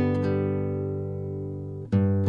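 Soft instrumental music on plucked guitar: a few notes ring out and slowly fade, and a new chord is plucked just before the end.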